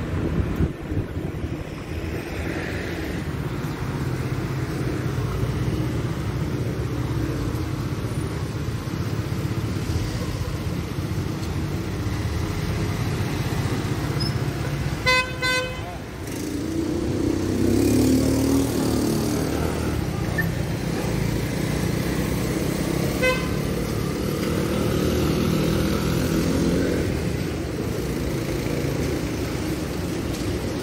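City street traffic: cars running and passing, with a car horn honking once for about a second about halfway through and a shorter, fainter toot later. A vehicle engine grows louder just after the first honk, then passes.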